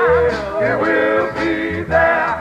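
A male gospel vocal group singing on a record, the lead holding notes with a wide, wavering vibrato over a pulsing bass line.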